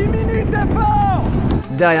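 A man yelling out to a cyclist from a follow car over heavy wind and road rumble. About one and a half seconds in, it cuts off suddenly to a calm speaking voice over music.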